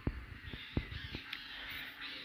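Faint calls of a bird in the background, with a few soft clicks.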